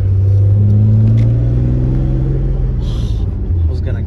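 Freshly rebuilt engine of a 1993 BMW E34 wagon pulling under acceleration, heard from inside the cabin: a loud low drone whose pitch climbs slowly for two or three seconds, then eases off. The car is being pushed hard while the engine is still in its break-in period.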